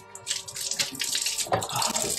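Kitchen faucet running into a stainless-steel sink, with splashing as water is brought to the mouth and runs off the face into the basin.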